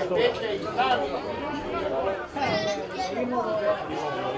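Spectators' voices near the microphone: several people talking at once in continuous chatter.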